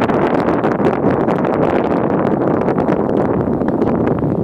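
Wind blowing across the microphone: a loud, steady rush with constant crackling buffets.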